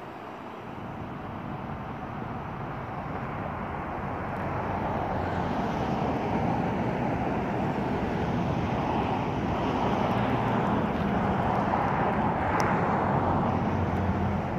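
A motor vehicle's engine, growing gradually louder over about ten seconds and staying loud near the end.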